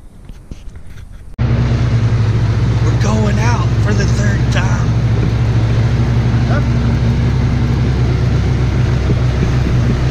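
Side-by-side utility vehicle's engine running steadily as it drives across a field, a loud, even drone that cuts in suddenly about a second and a half in, after a few faint knocks.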